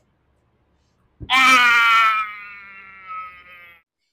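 A person's long wailing cry, starting suddenly about a second in, loud at first, then fading and sinking slightly in pitch over about two and a half seconds.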